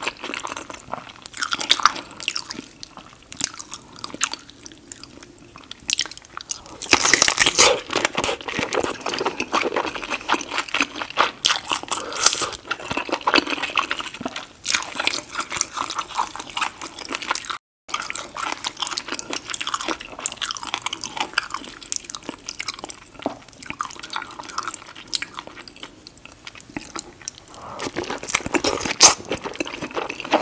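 Close-miked eating sounds: wet chewing and biting of a saucy seafood boil, with irregular crackles, clicks and squelches. There is a brief gap of silence just after the middle.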